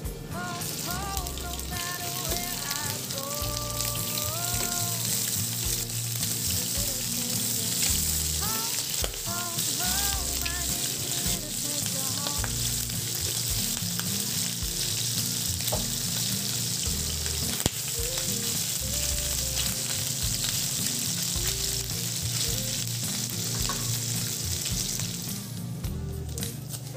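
Pork pieces frying in hot oil in a nonstick pan: a steady loud sizzle that starts as the first piece goes into the oil.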